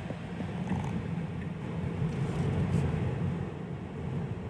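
Steady low road and tyre rumble inside the cabin of a Tesla Model 3 as it speeds up under throttle, with a short sharp click right at the start.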